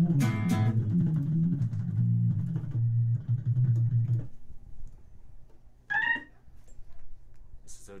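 Low bass notes played on a Hammond-style organ keyboard through a Leslie speaker; the playing stops about four seconds in. A brief high-pitched sound follows near six seconds.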